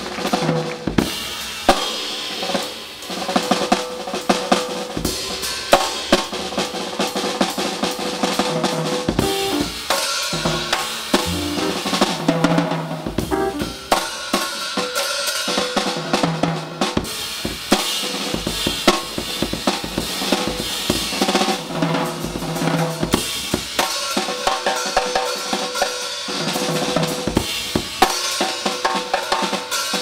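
Jazz drum kit solo: a dense run of strokes on snare, toms, bass drum and cymbals, with loud accents every second or two.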